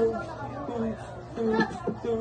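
Indistinct voices talking off-camera: short, broken snatches of speech with no clear words.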